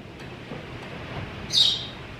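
A single short, high bird chirp, falling in pitch, about one and a half seconds in, over quiet room tone.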